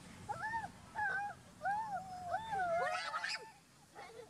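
Baby pigtail macaque calling: a run of about five arching coo calls, rising and falling in pitch, then a short harsher cry about three seconds in.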